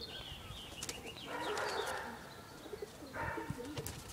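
Pigeons cooing in low, wavering tones, with two short stretches of rushing noise, the first about a second in and the second near the end.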